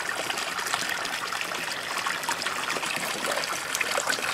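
Water trickling steadily into a koi pond, a continuous run of small splashes and drips.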